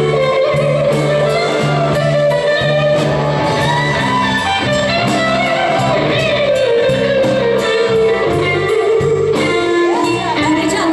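Live blues band playing: an electric guitar lead with bending notes over bass guitar and drums keeping a steady beat.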